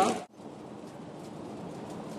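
Quiet, steady outdoor ambience on a golf course, cutting in abruptly a moment after the start.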